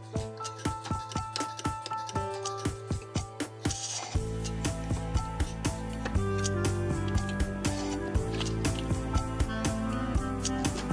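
Background music with a quick, steady beat and held notes; about four seconds in, a deep bass line comes in and the music gets louder.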